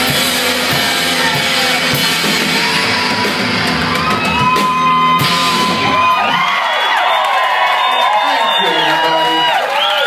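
Live rock band with drums and electric guitars playing the end of a song, the full band stopping about six seconds in. After it stops, the audience yells and whoops.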